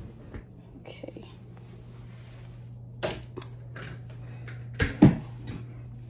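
Soft rustling and clicks from a handheld phone being moved, over a steady low hum. Sharper knocks come about three seconds in, and a louder pair about five seconds in.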